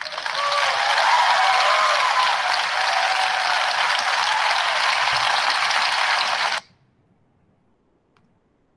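Large auditorium audience applauding at the end of a recorded talk; the applause cuts off suddenly about six and a half seconds in.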